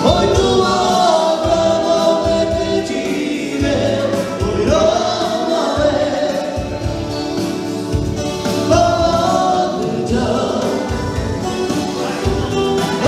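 Live dance band playing a song: a singer over electric guitars, keyboard and saxophone, with a pulsing bass line underneath.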